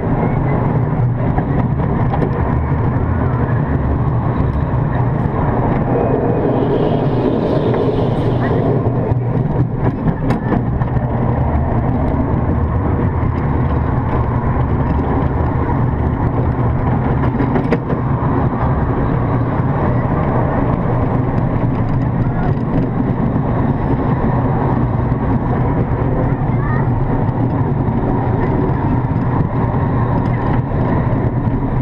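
Zierer Tivoli family coaster train rolling along its steel track, a steady rumble of the wheels heard from on board the train. A brief higher sound comes about seven seconds in, with a few short clicks around ten and eighteen seconds.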